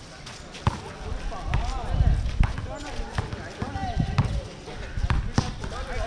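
Basketball bouncing on a hard court, a sharp thud at irregular intervals of about a second, with people's voices in the background.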